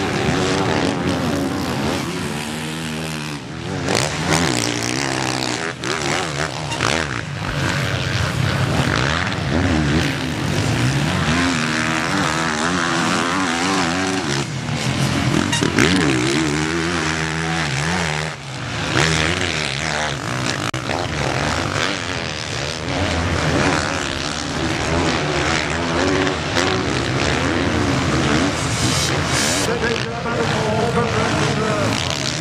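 Motocross bikes racing on a sand track, engines revving hard and easing off again and again as riders go through corners and over jumps, the pitch rising and falling throughout.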